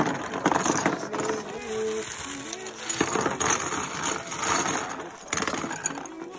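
Crinkling plastic mailer bag and small clear plastic heart-shaped jars clattering against each other as they are shaken out of the bag onto a table, in irregular bursts of rustling and clicks.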